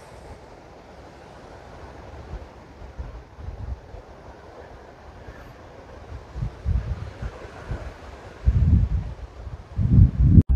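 Wind buffeting the microphone in low gusts that grow stronger from about six seconds in and are loudest near the end, over a steady rush of wind and surf.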